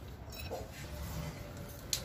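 Quiet handling of a small metal grease nipple being taken out of a scooter brake unit's casting: a faint short sound about half a second in and one sharp click near the end, over a low steady hum.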